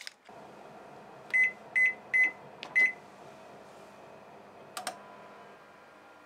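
Keypad of a microwave-oven combination beeping four times in quick succession as a 30-minute oven bake is set, over a steady hum from the running oven. A short click at the start and a double click about five seconds in.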